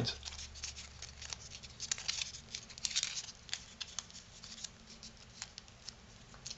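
Cardstock being creased and pinched by hand as origami folds are nested: faint, irregular paper crinkles and small sharp clicks.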